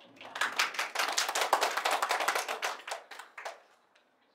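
Small audience applauding. The clapping builds quickly just after the start and dies away after about three seconds.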